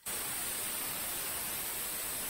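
Air hissing steadily out of an off-road tyre's valve stem through a screw-on quick tyre deflator as the tyre is let down.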